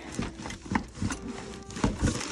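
Hand rummaging through a cardboard box packed with paper seed packets and plastic bags: irregular rustling with light knocks and scrapes.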